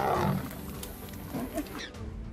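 Lions growling, loudest in the first half-second and quieter and broken after that. The sound changes abruptly near the end.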